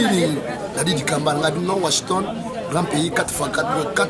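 People talking: only speech.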